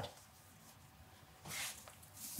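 Near silence with faint room tone, then a brief soft rustle about one and a half seconds in.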